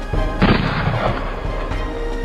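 A single sudden blast-like boom about half a second in, dying away within about half a second, over background music.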